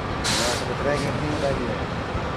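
Steady outdoor background noise, with a short sharp hiss of air about a quarter second in and a fainter one about a second in, and faint voices in the background.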